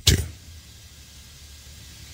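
A man's voice finishes one word, then only a faint, steady low hum remains.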